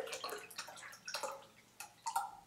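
A slightly thick mallow-flower infusion poured from a plastic jug into a gauze-lined plastic funnel, the stream splashing and trickling into the funnel and dying down toward the end.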